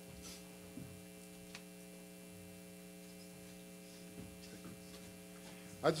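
Low, steady electrical mains hum in the sound system, with a couple of faint clicks.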